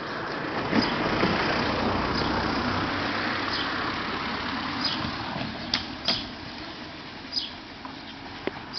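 A car driving past: its engine and tyre noise swells within the first second and fades away over the next few seconds. Small birds chirp briefly now and then throughout.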